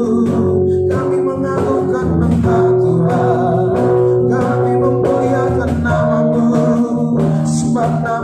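Live worship band playing a slow song: a male voice singing over electric guitars through amplifiers, with a cajon keeping the beat.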